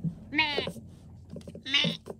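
A girl's laughter: two short, breathy giggles with a wavering pitch, about half a second in and again near the end.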